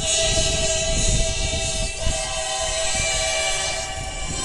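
Women's choir singing in Bulgarian folk style, holding long sustained chords that shift partway through.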